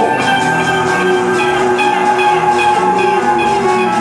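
Harmonica played through a microphone cupped in both hands, holding long, sustained notes and chords over a guitar accompaniment.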